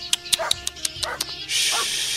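A quick run of about eight short, sharp yelps or clicks over a held background music chord, followed about one and a half seconds in by a burst of high hiss, as drama sound effects.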